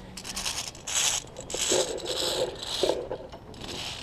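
Via ferrata lanyard carabiners scraping along the steel safety cable in irregular bursts as the climber walks across a plank-and-cable footbridge, with rustling of gear.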